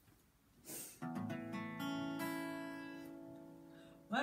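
Acoustic guitar playing slow opening chords: a chord struck about a second in, more near the two-second mark, each left to ring and fade. Just before the first chord there is a brief burst of noise.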